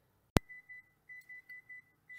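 A sharp click, then a cooker's timer beeper going off: a rapid run of short high-pitched beeps, about four a second, signalling that the set baking time is up.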